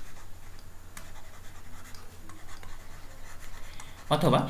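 Pen stylus scratching on a writing tablet as a word is handwritten in strokes, with a few light taps, over a low steady electrical hum.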